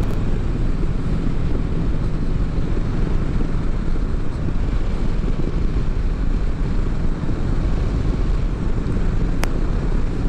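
Triumph Street Twin 900's parallel-twin engine running at a steady highway cruise, heard under heavy wind rush on the microphone. A single short click comes near the end.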